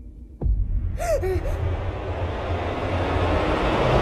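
Film sound design: a sudden low thud, then a deep rumble that swells steadily louder. A short, sharp gasp comes about a second in.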